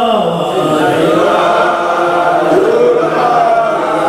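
Group of men chanting together in a drawn-out melodic Mawlid recitation in praise of the Prophet, voices holding long notes that slide in pitch, with a downward slide at the very start.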